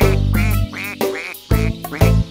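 Cartoon duck sound effect: a quick run of short, repeated quacks, about one every half second, over light background music.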